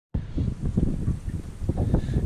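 Wind buffeting the action camera's microphone: an uneven, gusty low rumble.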